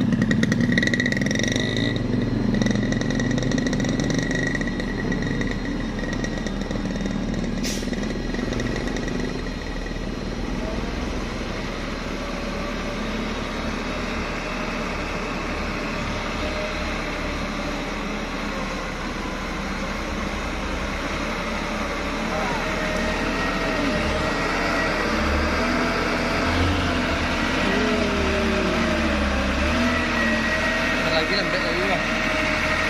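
Vehicle engines running: a motorcycle engine idling close by, with a Mitsubishi Fuso truck's diesel engine moving slowly ahead. Near the end the engine pitch wavers up and down.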